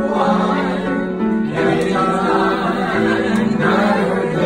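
A man and a woman singing a slow song together in harmony, holding long notes.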